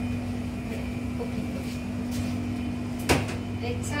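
Steady low hum of kitchen equipment, with a few faint clicks and one sharp knock about three seconds in.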